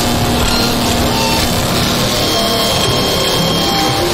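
Harsh noise music: a steady, loud wall of dense distorted noise across all pitches, with brief faint tones flickering through it.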